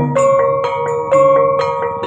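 Javanese Banyumasan gamelan playing an instrumental passage: struck bronze instruments ring out in a steady run of notes, about four a second, each note ringing on under the next.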